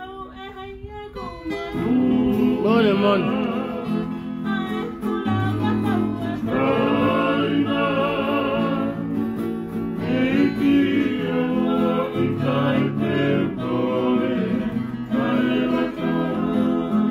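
A woman singing a solo, with a warbling voice over strummed acoustic guitar accompaniment. The music is quieter for the first second or so, then carries on steadily.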